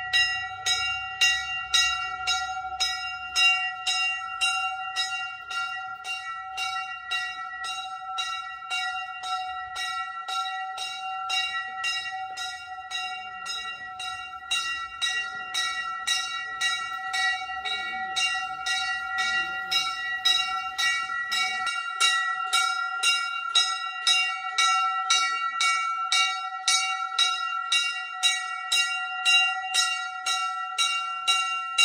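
Metal temple bell rung rapidly and continuously, an even run of strikes over a steady ringing tone with clear overtones.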